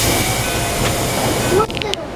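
Loud hiss of compressed air being let out on a Keikyu 1500 series train as it stands at the station, cutting off suddenly after about a second and a half.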